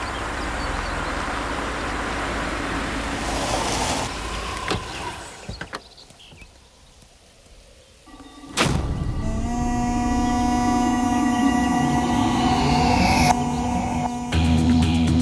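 Cars driving over a dirt track, a steady rumble of engines and tyres that dies away about five seconds in. After a quieter pause, a sharp hit at about eight and a half seconds opens a film score of sustained droning tones with sweeping pitches.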